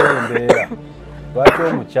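Short bursts of a person's voice, with sharp sudden onsets, over a steady background music bed.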